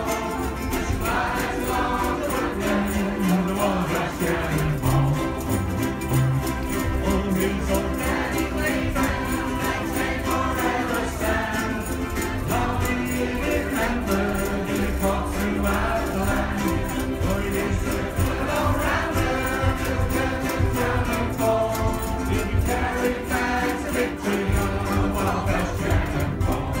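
A large ensemble of ukuleles strumming together in a steady rhythm, with many voices singing along as a group.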